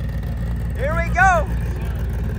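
Race car engine idling with a loud, choppy low rumble. A voice calls out twice in short rising-and-falling whoops about a second in.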